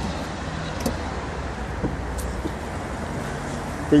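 Steady low outdoor background rumble of traffic, with a few faint, short clicks.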